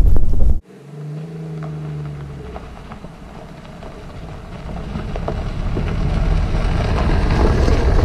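A loud in-cabin road rumble cuts off about half a second in. Then a Jeep Renegade with a 1.0-litre three-cylinder turbo petrol engine drives along a gravel road toward and past the listener: a steady engine hum, then tyres crunching on gravel, growing louder toward the end.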